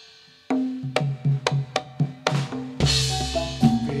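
Javanese gamelan accompaniment for a jathilan horse dance. After a short lull it comes back in about half a second in with drum strokes and struck ringing metal keys at roughly four strikes a second. About three seconds in there is a loud crash.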